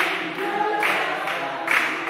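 A group of people singing together unaccompanied, with hand claps keeping time.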